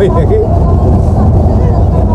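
Steady low engine and road rumble inside the cabin of a moving passenger bus.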